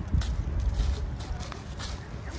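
Footsteps on a concrete sidewalk, a few sharp steps over a steady low rumble on the microphone.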